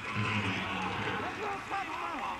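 Stadium crowd noise after a touchdown: a steady wash of distant voices, with a low held tone through the first second.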